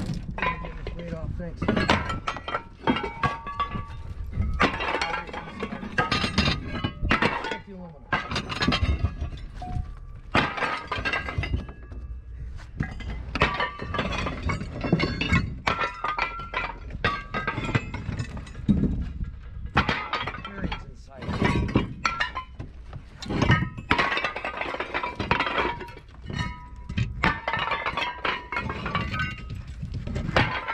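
Pieces of scrap metal, among them cast-iron brake rotors, thrown one after another onto a heap of scrap, landing in a steady run of clanks and crashes, some ringing briefly.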